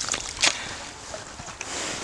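Water and ice slush sloshing and splashing in a freshly drilled ice-fishing hole as a hand ice auger is worked up and down and lifted out after breaking through, with one sharp knock about half a second in.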